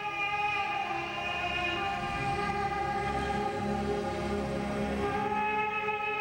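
Slow orchestral music of long held, overlapping string chords, the skater's short-program music.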